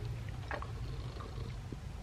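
Bathwater moving in a foamy bubble bath, with one short splash about half a second in, over a steady low rumble.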